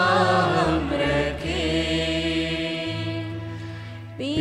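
Devotional music: voices singing long held, chant-like notes over a steady low accompaniment, with the phrase dying away near the end.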